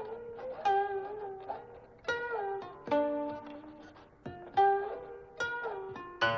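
Background music: a plucked zither playing slow, separate notes that ring and die away, several of them bent in pitch after the pluck.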